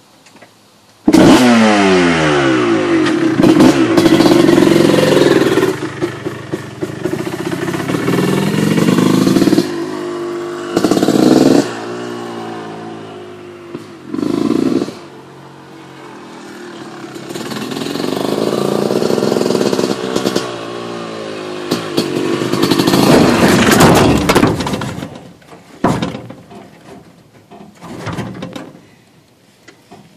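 Motorcycle engine starting abruptly about a second in, then revving and running with pitch rising and falling as the bike is ridden. It grows loudest near the end as it rides up onto the pickup's bed, then cuts out, followed by a few knocks.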